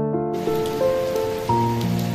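Steady rain falling, coming in suddenly just after the start, under background music of slow keyboard notes.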